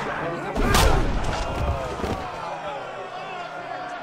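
A heavy punch lands about half a second in: one loud thud with a deep boom. A crowd shouts and a folk song is sung over it, then the impact dies away.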